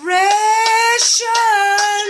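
A woman's voice singing out in a playful celebratory sing-song: two long, high held notes, the first rising and lasting about a second, the second shorter.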